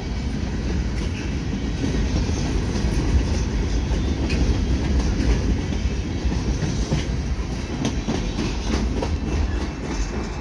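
Freight train's boxcars rolling past on steel wheels: a steady, deep rumble with scattered clicks of wheels over the rail joints.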